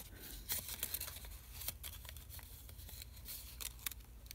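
Faint rustling and small ticks of a strip of paper being handled and folded between the fingers.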